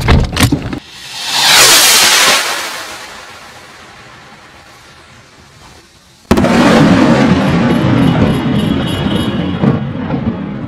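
Ghost Warrior salute rocket launching with a loud rushing whoosh about a second in, which fades as it climbs. About six seconds in comes one sharp, very loud bang as the salute bursts, followed by a long rolling echo.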